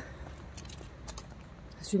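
A brief pause in a woman's speech, leaving faint, steady low background noise of a quiet outdoor park; her voice starts again near the end.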